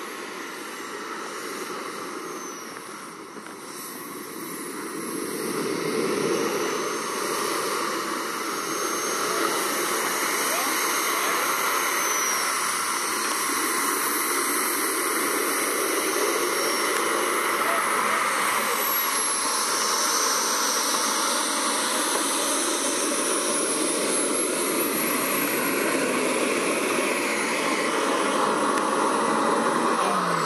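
JetCat 200 model gas turbine in a BVM Ultra Bandit radio-controlled jet, running at low power while it taxis on the ground. It is a steady rushing hiss with a thin high whine that drifts in pitch. It grows louder about six seconds in and stays loud as the jet comes close.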